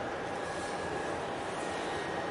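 Steady outdoor background noise with a faint continuous hum.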